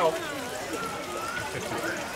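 Voices of people talking in the background, with faint sloshing of water in a stone Kneipp arm-bath trough as forearms are dipped in to cool them.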